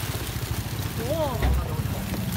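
A small engine idling, a low steady rumble, with a woman's drawn-out exclamation of amazement about a second in.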